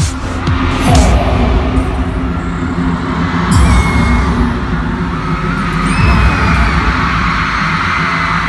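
Loud concert music over an arena sound system, with deep bass hits that drop in pitch about a second in, again at three and a half and at six seconds. Underneath is a haze of crowd screaming from the fans.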